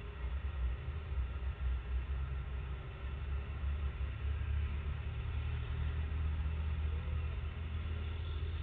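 Steady low rumble of road traffic, with no sudden events standing out.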